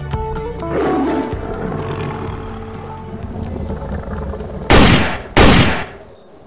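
Logo-reveal sound design: the last notes of the background music give way to a whoosh and a fading rumble, then two loud, sudden blasts in quick succession near the end.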